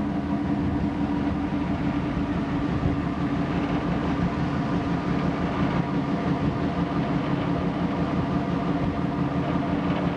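A passenger ship's engine running with a steady, unchanging drone, over a steady rushing noise, heard from the open deck.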